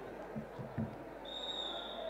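Referee's whistle: a single steady high blast starting a little past halfway, restarting the wrestling bout. A few dull low thumps come just before it.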